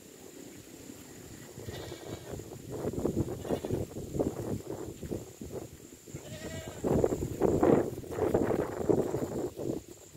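Wind buffeting the microphone in a rough rumble that grows heavier in the second half, with two short animal calls, about two seconds in and again after six seconds.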